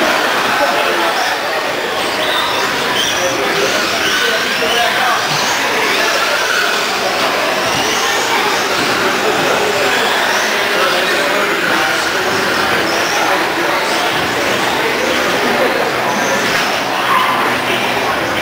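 Electric radio-controlled race trucks running laps on an indoor track: a steady din with many short whines rising and falling as they speed up and slow down, with voices in the hall behind.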